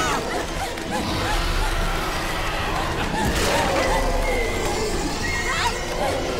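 Shrill, wailing cries, short rising-and-falling calls heard several times, over a steady low rumble of storm wind and rain in a cartoon soundtrack.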